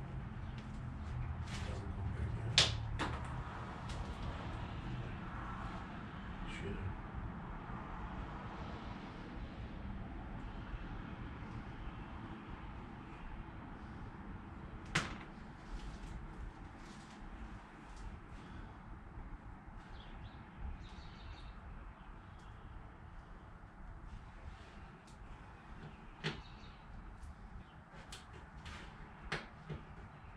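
Quiet handling of a car's trunk-lid liner as it is fitted back in, with scattered sharp clicks of its plastic push clips being pressed home; the clearest click comes about two and a half seconds in and another about halfway through.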